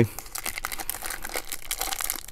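Foil wrapper of a Topps baseball card pack crinkling in the fingers as it is handled before being torn open, a run of light crackles.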